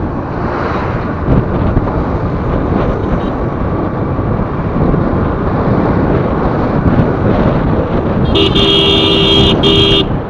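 Steady wind and road noise of a vehicle travelling on a highway, with a vehicle horn sounding loudly near the end, one long blast broken by a brief gap.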